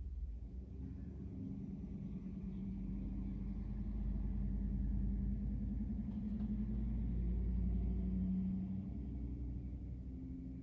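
Low engine rumble of a motor vehicle, steady with a slight pitch, growing louder through the middle and easing near the end.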